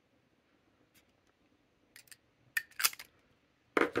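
TWSBI Eco fountain pen being capped: a few quick, sharp plastic clicks as the cap goes on, the loudest about two and a half to three seconds in.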